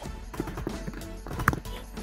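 Computer keyboard typing: a quick run of key clicks, one louder tap about one and a half seconds in.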